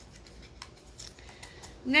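Faint small clicks and rustling of items being handled, then a woman starts speaking near the end.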